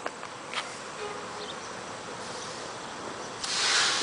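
A steady hiss of background noise, then a louder rush of noise for about the last half second.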